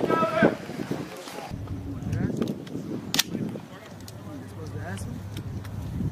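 A single sharp click from a rifle being handled in dry-fire drill, about three seconds in, followed by a few fainter clicks. Brief voices and a low steady hum run underneath.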